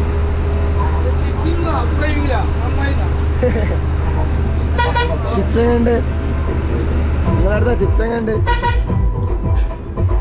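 Tourist bus engine running with a steady low hum heard from inside the cab, breaking up about seven seconds in. The horn sounds briefly about five seconds in and again near nine seconds, with voices over it.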